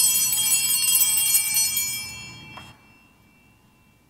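Altar bells ringing for the elevation of the chalice at the consecration: a bright ringing for about two and a half seconds that then stops, with one tone fading out a moment longer.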